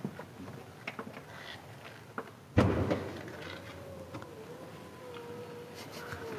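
BMW SUV's power tailgate releasing with a sudden thud about two and a half seconds in, then its motor whining steadily as the tailgate lifts.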